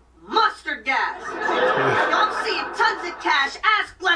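A man chuckling and laughing, with voices talking throughout.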